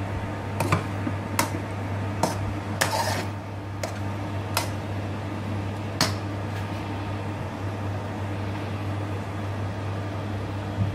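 A metal spoon knocking and scraping against a frying pan while rice is stirred, with about seven sharp clinks in the first six seconds and none after. A steady low hum runs underneath.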